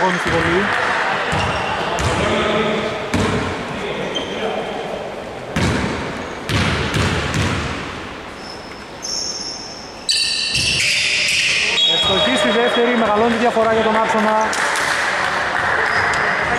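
A basketball bouncing on a hardwood gym floor a few times, with voices echoing around the hall. A few brief high-pitched squeaks come about ten seconds in.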